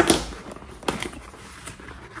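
Paper and card being handled on a tabletop: a brief rustle and knock as a card package is put down at the start, then a sharp tap just under a second in.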